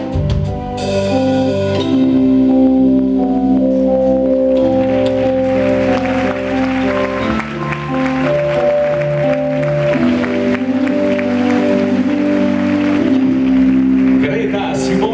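Live band's keyboards holding slow, sustained organ-sound chords that change every second or so, closing out a song. A steady hiss joins above the chords from about four seconds in.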